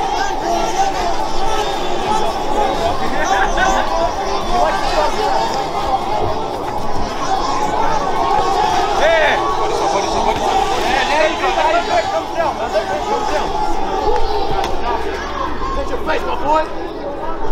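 Ringside spectators chattering and calling out, several voices overlapping, during a sparring round.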